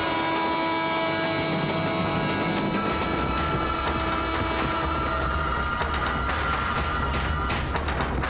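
Film background score with long held notes over the rumble and clatter of a moving train; the train's low rumble grows stronger about three seconds in.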